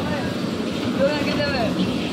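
Electric bumper-car rink running: a steady mechanical rumble from the cars with voices over it.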